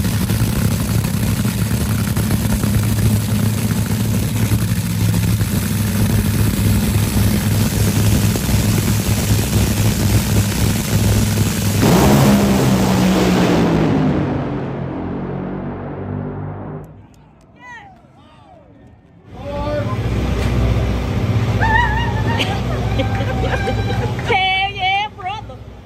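Top Fuel dragster's supercharged nitromethane V8 running loudly at the starting line. About twelve seconds in it launches at full throttle, and the engine falls in pitch and fades as the car runs away down the track. Excited voices follow in the last few seconds.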